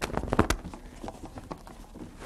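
A quick cluster of sharp clicks and knocks in the first half-second, then softer rustling: a stack of stiff picture boards and papers being handled and sorted through.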